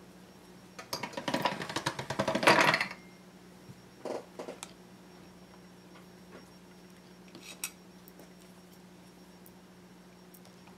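Small hard craft items clattering on a tabletop for about two seconds as polymer clay and a plastic cookie cutter are handled, followed by a few single clicks, over a low steady hum.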